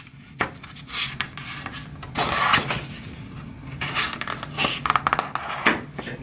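Cardstock rustling and scraping as a plastic stick is pushed through punched holes to widen them, in irregular bursts with small clicks, loudest about two and a half seconds in.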